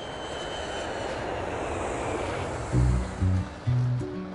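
Jet airplane climbing after takeoff, its engines a steady wide rush with a faint whine sliding down in pitch. About three-quarters of the way through, music with heavy bass notes comes in over it.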